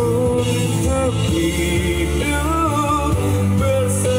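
A man singing a melodic song into a microphone, with a sustained low accompaniment from acoustic guitar.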